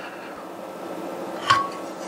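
Steady cooling-fan noise from an electronic load's heat-pipe cooler, with one light clink about one and a half seconds in.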